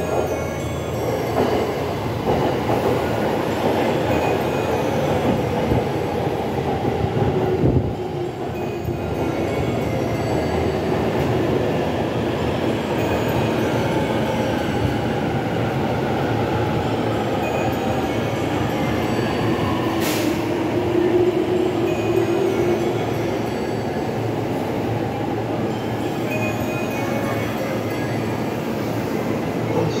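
A coupled JR East E231 series 1000 and E233 series 3000 commuter train pulling into the platform and braking to a stop: continuous wheel and running noise, with the motors' tones gliding slowly downward as it slows. A single sharp click about two-thirds of the way in.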